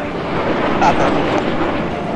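Steady aircraft noise, an even rushing sound with no beat or change in pitch.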